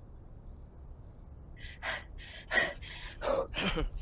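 Crickets chirping faintly and slowly as night-time ambience. About halfway through, loud, breathless panting and gasps break in.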